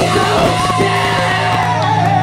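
Live rock band playing: electric guitars holding chords over drums, with a raised vocal line gliding over the top.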